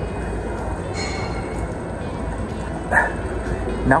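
Steady rush of the hot spring's water flowing through its stone channel, with a short sharp sound about three seconds in.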